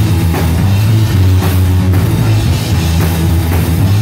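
Live rock band playing loud and steady: electric guitars holding chords over a drum kit beating a regular rhythm with cymbal crashes.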